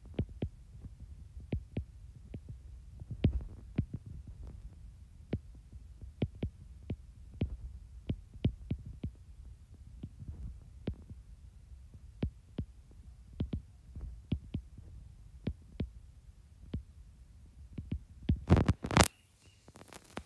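Stylus tip tapping and clicking on a tablet's glass screen while handwriting, with light, irregular clicks over a low hum. A louder bump or rustle comes near the end.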